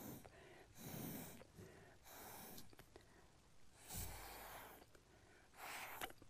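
Faint puffs of breath blown through a drinking straw, about five short blows roughly a second apart, pushing wet alcohol ink across a canvas. The blow about four seconds in is the strongest and carries a low rumble.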